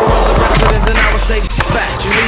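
Skateboard wheels rolling on rough pavement: a steady low rumble that starts suddenly and breaks off about a second and a half in, with a hip hop beat playing underneath.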